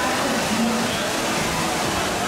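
Steady rush of falling water from an indoor fountain, heard through the murmur of a crowd in a large hall.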